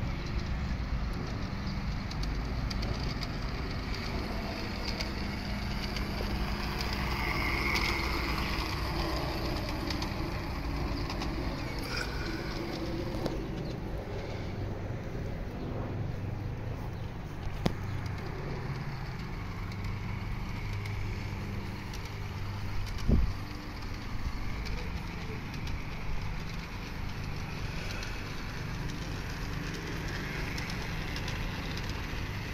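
Steady low outdoor rumble with a bird chirping now and then, and a single low thump a little over 23 seconds in.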